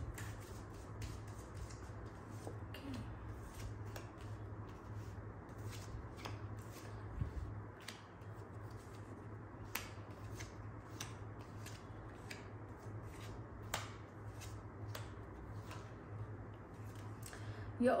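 A deck of tarot cards being shuffled by hand and dealt out onto a cloth-covered table: a faint run of short, irregular card clicks and snaps over a low steady hum.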